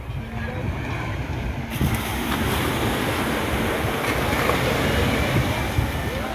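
Surf washing on the beach, mixed with wind buffeting the microphone in a steady, low rumbling rush. The rush becomes fuller and brighter a little under two seconds in.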